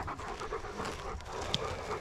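Panting: steady, breathy, open-mouthed breaths, with one short high note about one and a half seconds in.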